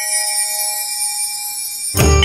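A struck bell ringing out and slowly fading, with a high shimmering layer above it, in the intro of a recorded devotional dance track. Right at the end the full music comes in with a deep bass.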